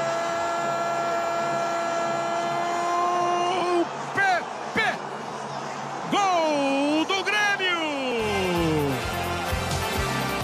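Television football commentator's goal cry, one long note held for about four seconds, then more shouted exclamations that swoop and fall in pitch. Background music with a steady beat comes in near the end.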